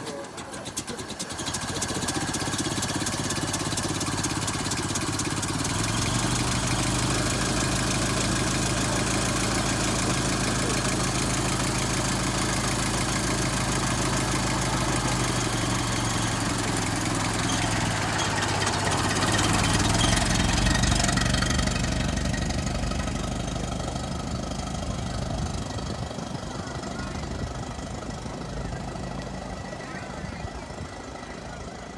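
1926 Ford Model T's four-cylinder flathead engine catching about a second in and running at idle, its revs rising about twenty seconds in as the car pulls away, then fading as it drives off.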